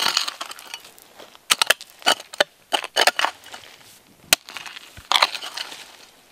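A metal hoe chopping repeatedly into dry, stony red clay soil, each stroke a sharp crunch with loose earth and clods scattering. The strokes come in quick groups of two or three with short pauses between them.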